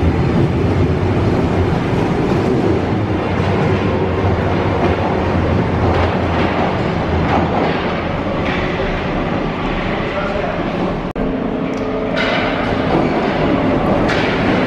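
Paris Métro Line 7 train pulling out of the station, its rumble of wheels and motors loud at first and easing as it leaves the platform. About 11 seconds in there is an abrupt break, and then another train is heard coming in from the tunnel.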